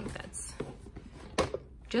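Leather handbag being handled and set upright on a cloth dust bag: a few soft knocks and rustles, the sharpest knock about a second and a half in.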